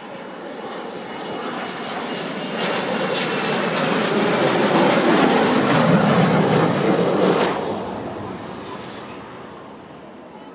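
RAF Panavia Tornado's twin RB199 turbofan engines on landing approach, growing louder as the jet comes in low and passes close by. The engine noise is loudest a little past halfway, then drops off sharply and fades as the jet touches down and moves away.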